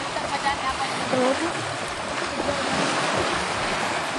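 Small sea waves washing steadily onto a sandy beach in shallow water, with faint voices mixed in.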